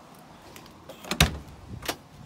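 VW Beetle door being opened by its push-button handle: a sharp latch click about a second in, then a second, lighter click near the end as the door comes open.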